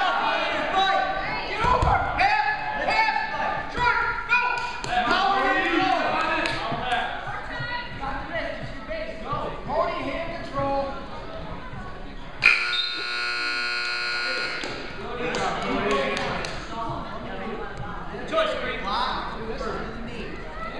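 Gym scoreboard buzzer sounding one steady blast of about two seconds, a little past the middle, ending a wrestling period, amid shouting from the crowd and coaches in a large hall.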